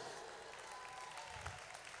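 Faint audience applause: many people clapping at once, heard at a distance from the microphone as an even patter.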